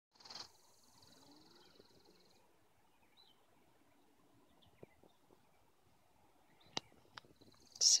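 Quiet outdoor ambience: a faint, high, steady buzz for the first two seconds or so that returns near the end, with a brief handling bump at the very start and a few soft clicks a couple of seconds before the end.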